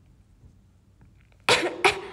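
A woman coughing twice in quick succession, two loud, sharp coughs about a second and a half in.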